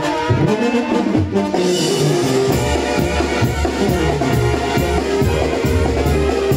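Mexican banda brass music: trumpets and trombones playing over a steady beat, with a heavy bass line coming in about two and a half seconds in.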